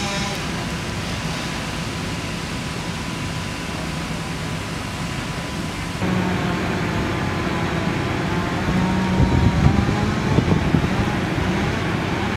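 Outdoor background noise with a steady low hum from a running machine or engine. After a sudden step up in level partway through, irregular low rumbles come and go near the end.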